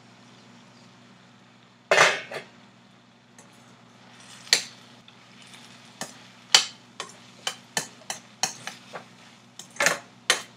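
A metal spoon knocking and scraping against a stainless steel pan while cooked bottle gourd pieces are stirred, the knocks coming faster toward the end, after one louder metal clank about two seconds in.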